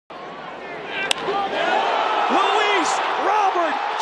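A single sharp crack of a baseball bat hitting the ball about a second in, on a home-run swing, over ballpark crowd noise that swells afterward, with an announcer calling the hit.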